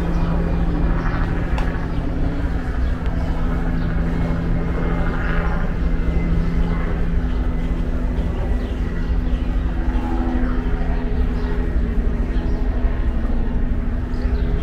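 Steady low drone of distant engines, a continuous rumble with a constant hum running under it, heard as park ambience.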